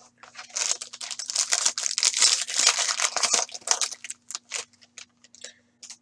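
Foil trading-card pack being torn open and crinkled: a dense crackle for about three and a half seconds, thinning to a few scattered crinkles near the end.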